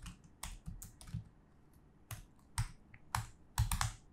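Typing on a computer keyboard: separate, irregular key clicks, with a quick run of keystrokes near the end.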